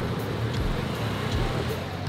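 Steady road traffic on a city street, with motor scooters and cars running close by.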